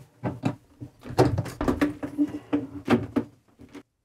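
Bifold shower door being folded and moved along its track: a series of clicks and knocks from the panels and frame, with a steadier rumble from the door running in the middle.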